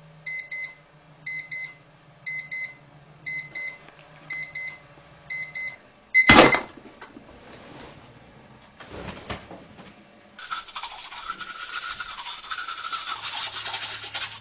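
Quartz alarm clock beeping in quick pairs about once a second, cut off after a loud smack about six seconds in. Near the end comes a steady scrubbing of teeth being brushed with a toothbrush.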